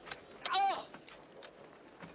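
A man's short, pained cry about half a second in, followed by faint knocks and scuffling.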